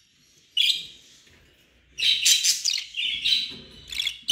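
Budgerigars chirping: one short high chirp about half a second in, then a quick run of chirps and chatter from about two seconds on.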